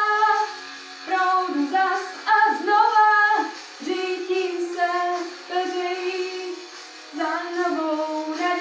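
A young girl singing a Czech pop song solo: phrases of held notes that slide between pitches, with short breaths between them.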